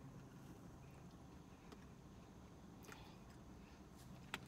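Near silence: quiet room tone inside a parked car, with a few faint soft clicks of someone chewing a bite of cookie.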